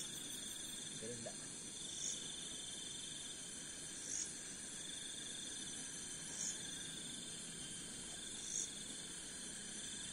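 Night-time insect chorus: a steady high buzz of crickets, with a pulsing trill that comes and goes. A short high chirp repeats about every two seconds.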